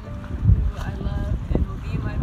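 Wind buffeting the microphone as a gusting low rumble, loudest about half a second in, with a young woman's voice talking over it.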